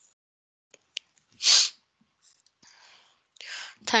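A person's short, loud burst of breath noise about one and a half seconds in, sneeze-like, with a quieter breath rushing in near the end just before speech starts.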